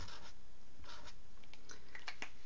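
Sharpie felt-tip marker writing letters on paper: a few short, faint scratchy strokes.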